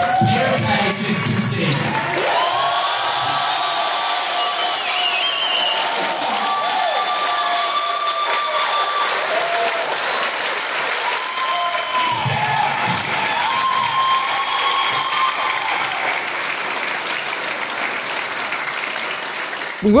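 A theatre audience cheering and applauding, with shouting voices above a steady wash of clapping.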